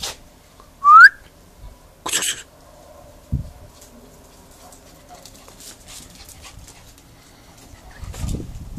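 An energetic dog in a yard. About a second in comes one short, rising, whistle-like call, the loudest sound. A short hissy burst follows about two seconds in, and a low thump a little after.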